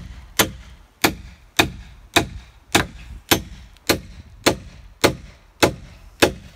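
Steady hammering of a long metal spike into a wooden beam with the back of a hatchet: a run of about ten sharp metallic clangs, nearly two a second, each with a short ring.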